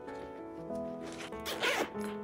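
A handbag's zipper being pulled along in one zip in the second half of the clip, over soft piano background music.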